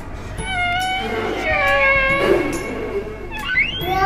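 Whale calls played as a sound effect: long pitched calls that glide down in pitch, then a quick rising sweep near the end, over background music.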